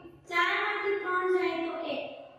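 A woman's voice in one drawn-out, sing-song phrase beginning just after the start and trailing off near the end, the chanted way a teacher reads out a sum's answer.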